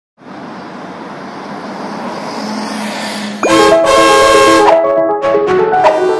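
Road traffic noise swelling steadily for about three and a half seconds, then bright music comes in abruptly with a quick rising swoop and a run of plucked, melodic notes.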